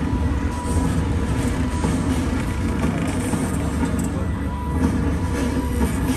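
Studio tour tram running, a steady low rumble.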